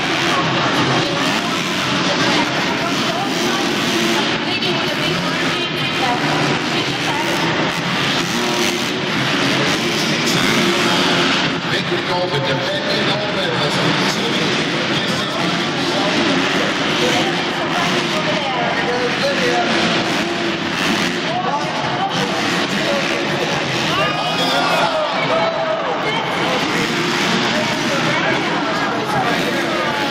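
Motocross bikes racing around an indoor arena dirt track, their engines revving up and down, under a steady din of crowd voices. The sweeping rises and falls of the engines stand out most clearly in the last few seconds.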